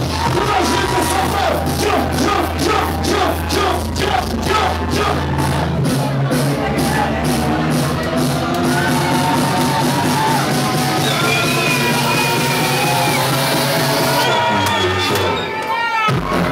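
Electronic dance music played loud over a nightclub sound system. A steady beat runs for about the first half, then gives way to held synth notes; near the end the sound thins and dips briefly.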